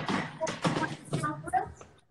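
Speech: a person talking, not caught by the transcript, with no other sound standing out.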